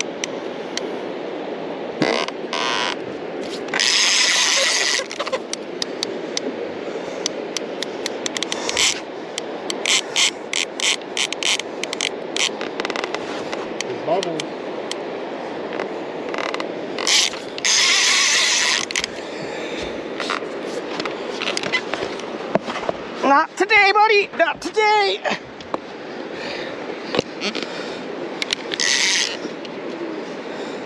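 A heavy conventional fishing reel being cranked while fighting a big white sturgeon, its gears and ratchet giving runs of sharp clicks. Several one-second rushes of hiss break in, and a short wavering cry comes about three-quarters of the way through.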